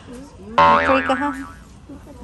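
A cartoon 'boing' sound effect: a wobbling spring-like tone that starts suddenly about half a second in and dies away over about a second.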